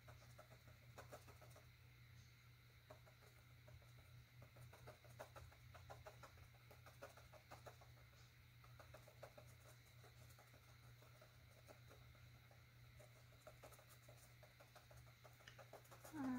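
Faint, quick taps and light scratches of a paintbrush dabbing and flicking acrylic paint onto a canvas panel, over a low steady hum.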